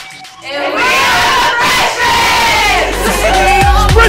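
A group of young women shouting and cheering together for about two seconds. Music with a heavy low beat starts about two and a half seconds in.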